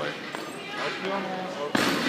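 People's voices in a large indoor hall, with a few thuds, then a sudden loud rush of noise about three-quarters of the way in.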